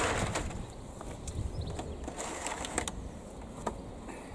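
Wind buffeting the microphone, with scattered light knocks and rustles as pots of tomato seedlings are shifted and lifted out of a cold frame.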